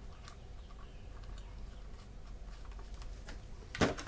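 Faint, scattered light clicks and taps of a chainsaw's plastic cover being handled and pressed into place, over a low steady hum.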